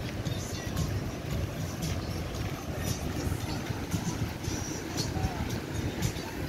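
Outdoor beach ambience during a walk: wind buffeting the microphone with a fluctuating low rumble, over the wash of surf, with voices and music faintly in the background.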